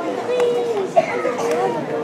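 Several children's voices chattering and talking over one another, with one brief loud sound about a second in.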